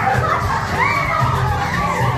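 A group of children calling out and chattering, with some high, rising-and-falling shouts, over music with a steady low bass.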